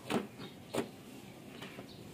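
Two sharp plastic knocks about two-thirds of a second apart, then a fainter click, as a toy RC remote control is handled and turned over on a plastic table to reach its battery compartment.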